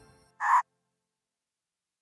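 Children's background music fading out, then one short squawk-like cartoon creature call, about a quarter second long, half a second in.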